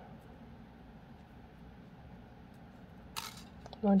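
Faint ticks and rustling of thin craft wire being worked by hand around a beaded wire tree, with a short hiss about three seconds in.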